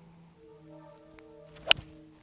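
A Titleist T200 4-iron striking a golf ball: one sharp, crisp impact about a second and a half in, over soft background music.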